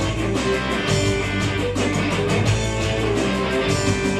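Live music led by electric guitar playing, with a regular beat and no singing: an instrumental passage.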